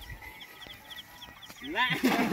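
A cast net landing on the river with a splash near the end, together with a short call that sweeps upward. Before that, faint rapid chirping, about five a second, in the background.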